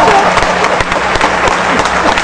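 Audience applauding, many hands clapping at a steady, even level.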